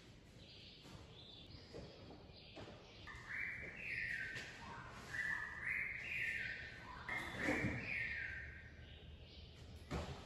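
A bird singing from the garden in three loud, clear phrases, each a run of short notes stepping up and down in pitch, heard from about three seconds in until near the end.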